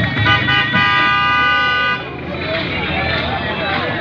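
Car horn: a couple of short toots, then one long steady blast that cuts off about halfway through, with men's voices around it.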